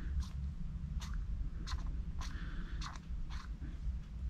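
Oiled piston being pushed in and out of a small brass model steam engine cylinder by hand, a short soft click or squish at each stroke, about two a second, over a low steady hum.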